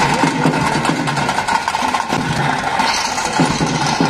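Traditional drums of a tiger-dance (pili vesha) troupe, played loudly in a continuous fast beat, close to the microphone and harsh, with a steady droning tone underneath.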